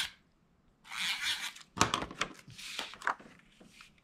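Paper handling: cardstock rubbing and rustling in two short bursts, with a few light ticks in between, as a patterned paper mat is positioned and pressed down.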